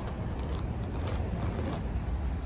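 Wind buffeting the microphone outdoors: a steady, low rumble.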